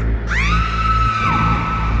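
Electronic music with a low bass drone, over which a high, scream-like shriek sweeps sharply up in pitch about a third of a second in and is then held.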